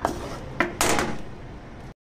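Metal pizza pans clattering as they are handled at a pan rack: a couple of sharp knocks, then a longer sliding scrape about a second in.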